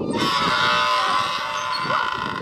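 Rusty playground merry-go-round squealing at its central pivot as the children push it round: one long, steady, high squeal lasting most of two seconds. The squeal is the sign of the corroded bearing turning dry.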